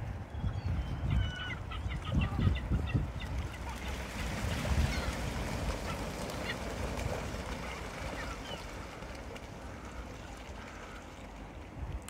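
A large flock of gulls calling as it takes flight together, with short cries bunched in the first few seconds. A steady rush of sound follows and fades as the birds spread out over the water.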